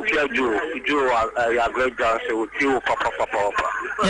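Speech only: a person talking continuously, in speech the transcript did not catch.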